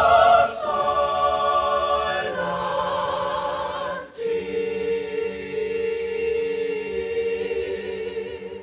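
Mixed choir of men and women singing, holding long sustained chords; about four seconds in the sound breaks briefly and settles onto a lower held chord.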